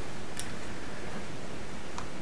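Steady background hiss of room tone, with one faint brief click about half a second in.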